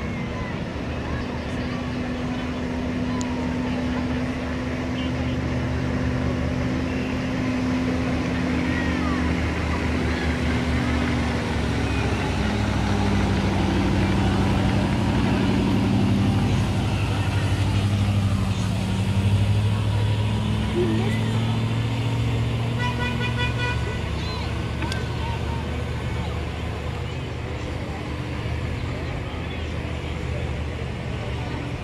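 Ice resurfacing machine's engine running steadily as it drives across the rink, growing louder as it passes close about halfway through, then fading as it moves away. A brief horn-like toot sounds a little after it passes.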